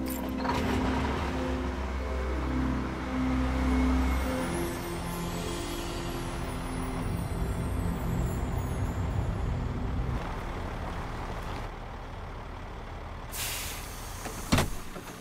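Semi-truck running on the road, a steady rumble of engine and road noise, under music that stops about four seconds in. Near the end comes a short, sharp hiss of air brakes as the truck pulls up.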